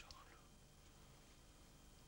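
Near silence: a steady faint hiss with low hum from an old television soundtrack, after the soft tail of a whispered word in the first half second.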